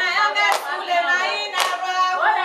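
Women singing together in unison, held and gliding notes, with a sharp hand clap about once a second.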